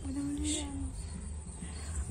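Open-air field ambience with a low wind rumble on the microphone. A short, high insect chirp comes about half a second in, and a faint voice is held for under a second at the start.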